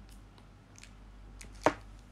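Handling noise close to the microphone: a few faint taps and clicks, then one sharp knock near the end.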